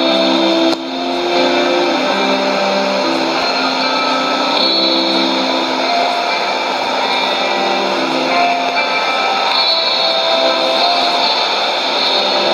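Guitar-led music from a shortwave AM broadcast received on a Sony ICF-2001D receiver, tuned to 15825 kHz. The loudness drops briefly under a second in.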